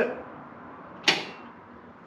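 One sharp click about a second in, with a short ringing tail: the Jeep's push-pull headlight switch being pushed in, switching the lights off.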